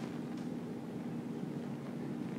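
Steady low room hum, with a few faint clicks of laptop keys as a terminal command is typed.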